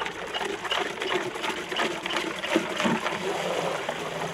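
Dark liquid in a tub stirred hard with a wooden pole, sloshing and splashing irregularly as it churns into a swirling vortex; this is stirring of a biodynamic vineyard preparation.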